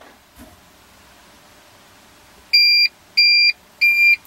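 APC battery-backup UPS beeping, the alarm it gives when it loses mains power and switches to battery: three short high beeps about two-thirds of a second apart, starting about halfway in.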